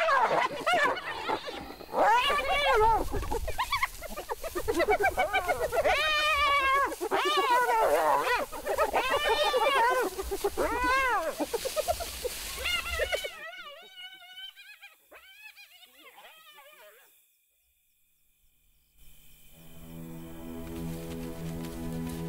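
Spotted hyenas crying out in a fight within the clan: a fast, overlapping run of loud calls that rise and fall in pitch, fading away about two-thirds of the way through. After a brief near silence, sustained music tones begin near the end.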